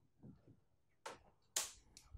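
Quiet room tone in a pause, broken by two faint, brief noises, one about a second in and one shortly after.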